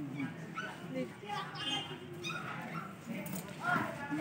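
A black Labrador–German shepherd mix dog whimpering in several short, high whines while being soaped during a bath.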